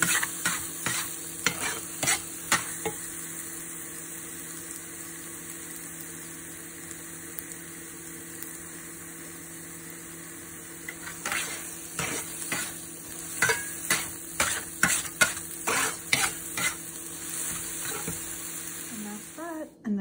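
Scrambled eggs and ham sizzling in a cast-iron skillet while a metal spatula scrapes and turns them against the pan. A run of scrapes for the first few seconds, a stretch of steady sizzle, then scraping again from about eleven seconds in.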